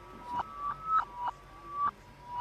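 Ambient electronic music built from shortwave-radio tones: a run of held beeping notes stepping between a few pitches, each swelling and then cutting off, about three a second.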